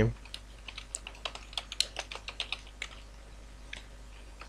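Computer keyboard typing: a quick run of key clicks for about three seconds, then a couple of lone clicks near the end.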